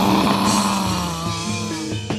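Live music from the gamelan ensemble accompanying a jaranan (kuda lumping) dance. A loud crash with a low ringing note sounds at the start and dies away over about two seconds, over steady pitched notes.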